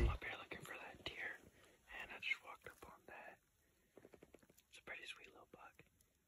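A person whispering faintly, in short phrases with pauses between them.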